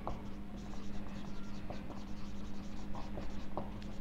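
Marker pen writing on a whiteboard: a run of short, faint strokes as a word is written out, over a steady low hum.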